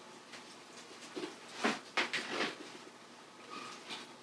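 Soft, short handling sounds of basting: a brush dabbing barbecue sauce onto raw pork ribs in the cooker pot, a few quiet strokes between one and two and a half seconds in.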